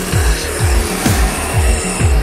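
Electronic music with a pounding beat of low bass kicks that drop in pitch, about four a second.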